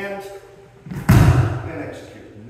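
Heavy thud of bodies landing on a judo mat as a kani basami scissor throw takes the partner down, one loud impact about a second in that fades over half a second.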